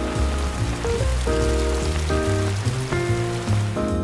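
Steady splashing of a fountain's water jets, cutting off suddenly near the end, mixed with background music of held chords and a bass line.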